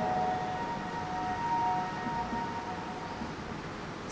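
A faint, steady high tone of two notes held together that fades out after about two and a half seconds, over low room noise.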